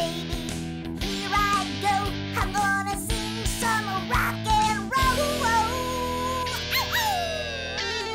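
Rock-style electric guitar music over a sustained backing, with notes that bend and slide in pitch and a long downward slide near the end.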